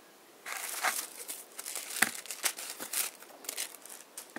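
Wrapping being crinkled and crumpled by hand, with sharp crackles throughout and the loudest snap about two seconds in.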